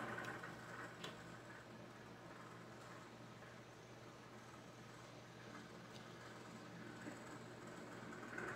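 Near silence: room tone with a faint steady low hum and a few faint clicks of tarot cards being handled, about a second in and again near the end.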